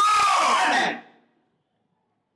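A loud, drawn-out shouted cry of the command 'Sors!' (come out), a held, slowly falling yell from a deliverance prayer against evil spirits. It cuts off about a second in.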